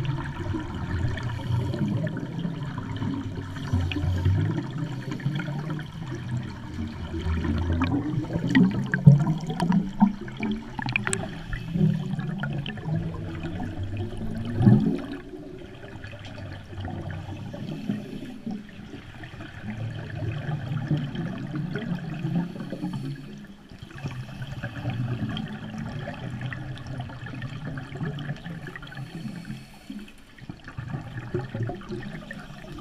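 Underwater gurgling of scuba divers' exhaled bubbles from their regulators, heard through a waterproof camera housing, with louder bursts now and then.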